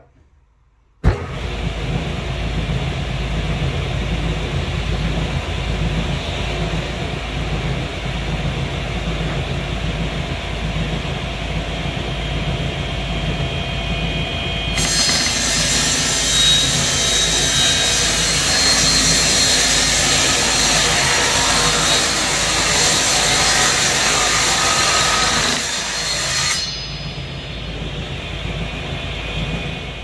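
Table saw switched on about a second in and running steadily. About halfway through, its blade cuts through a quarter-inch acrylic sheet: a loud, harsh, high-pitched cutting noise that lasts about twelve seconds. Near the end the saw runs free again.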